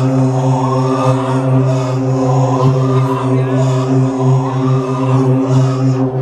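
Dance music from a DJ set played loud over a club sound system: a held, droning chord with a rising-and-falling phrase repeating about once a second.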